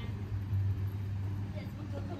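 A steady low mechanical hum, swelling slightly about half a second in, with faint voices in the background.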